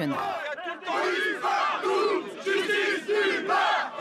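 A crowd of protesters shouting, many voices over one another, with brief lulls.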